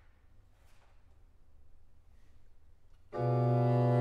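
Quiet room tone for about three seconds, then a chamber organ suddenly sounds a sustained continuo chord over a strong low bass note, opening the recitative.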